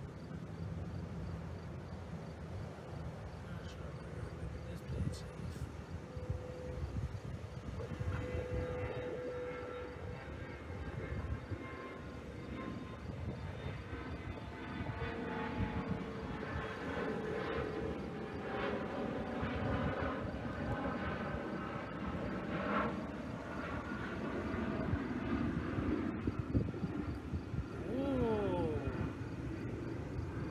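Jet airliner flying past in the distance: a low rumble with an engine whine that comes in about a third of the way through and falls slowly in pitch, growing louder toward the end.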